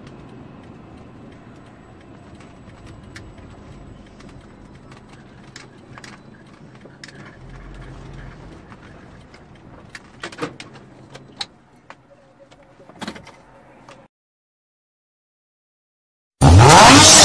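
Low, steady noise of a car moving slowly and slowing nearly to a stop, heard inside the cabin, with a few scattered sharp clicks and knocks. The sound cuts out to silence about two seconds before the end.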